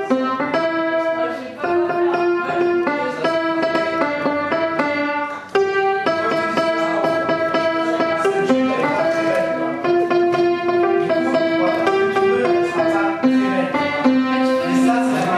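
Upright piano being played: a continuous melody of changing notes.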